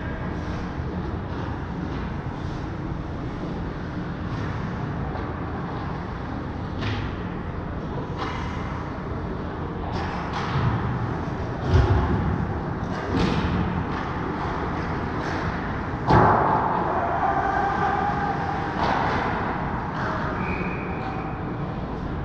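Ice hockey rink during play: a steady wash of rink noise broken by a few sharp thuds and knocks. The two loudest come about 12 and 16 seconds in.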